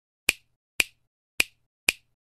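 Four sharp finger snaps, evenly spaced about half a second apart, used as a sound effect in an animated text intro.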